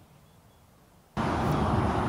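Near silence for about a second, then steady outdoor background noise starts abruptly: a rumbling hiss, such as traffic or wind on the microphone.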